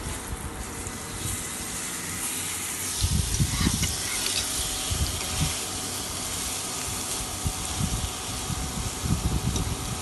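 Paneer steaks sizzling in a hot grill pan: a steady crackling hiss that grows stronger about a second in, with a few short low bumps.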